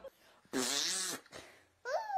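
A raspberry blown with the lips close to the face: one buzzing, spluttering burst lasting about half a second, then a short squeaky vocal glide near the end.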